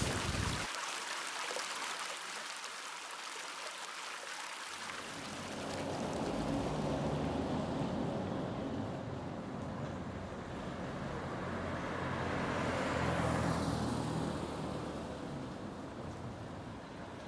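A steady high hiss, then from about five seconds in, street traffic noise with a low rumble that swells twice as cars go by.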